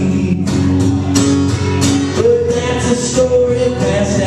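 Male voice singing a country song over a strummed acoustic guitar, holding long notes.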